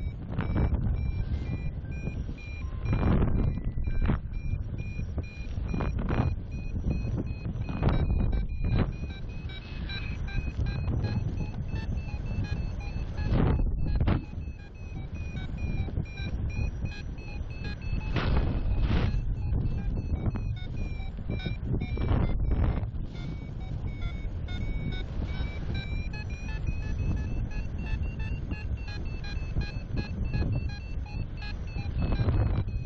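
A paragliding variometer sounds a continuous train of short, high climb beeps, signalling a gentle but steady climb in a thermal. The pitch lifts a little through the middle, dips about 23 seconds in, and rises again. Airflow rushes over the microphone in gusty surges underneath.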